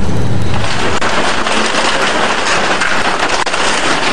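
Wheel loader's bucket crushing a street stall's wooden frame and corrugated-iron roof: a dense, crackling crunch of breaking debris that sets in about half a second in and goes on steadily.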